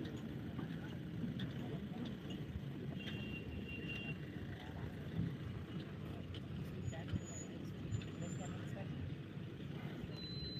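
Distant people talking over a steady low rumble, with a few faint clicks and brief high chirps.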